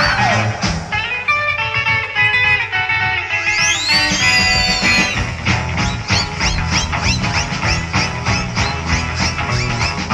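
Instrumental passage of 1960s rock music: electric guitar over bass and drums, with a quick run of short notes, a long bending note about four seconds in, then a steady beat.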